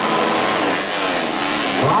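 Motocross dirt bike engines revving up and easing off during a grass track race, their pitch rising and falling.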